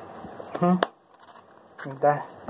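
A person's voice making two short wordless murmurs, one about half a second in and another near the end. A sharp click follows the first, then about a second of near quiet.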